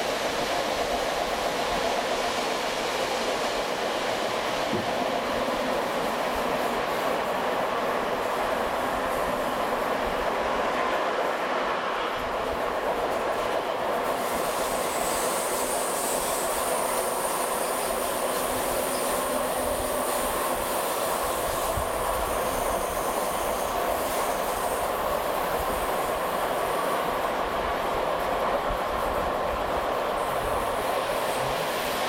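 Railway coach running along the track, with a steady rumble and rattle of wheels on rail. From about halfway in to near the end, a thin high squeal of wheels is heard as the train rounds a curve.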